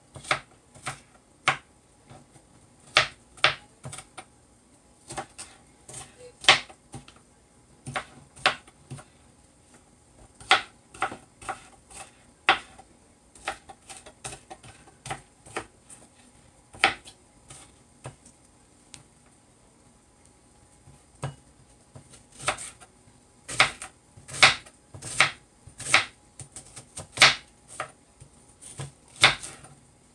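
Kitchen knife chopping small red onions on a plastic cutting board: sharp, irregular taps, a pause of a few seconds a little past the middle, then a quicker run of chops near the end.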